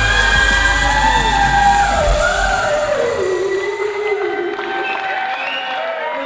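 Live pop performance: a male singer holds long notes that slide downward over a band. The bass and beat drop out about two and a half seconds in, leaving the voice nearly alone.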